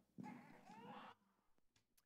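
Near silence: room tone, with a brief faint voice in the first second.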